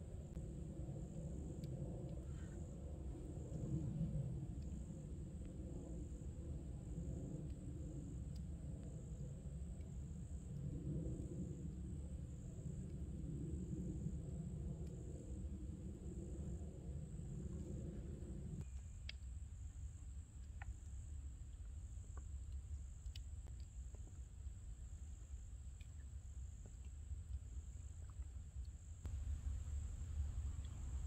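A steady, high-pitched, pulsing insect chorus. Underneath it runs a low drone that cuts off suddenly about two-thirds of the way through, and a few faint clicks come in the later part.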